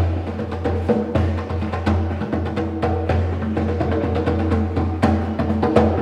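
Live stage music with a djembe being hand-drummed in a quick, steady rhythm over a sustained low bass note and held pitched notes.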